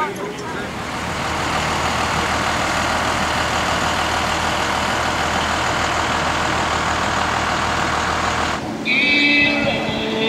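School bus diesel engine running close by: a steady low rumble under a broad hiss. It cuts off abruptly shortly before the end, and music takes over.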